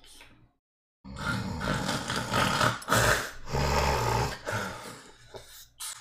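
A person making a loud, rasping, snore-like noise with the voice, starting about a second in and lasting several seconds, deepest and loudest near the middle.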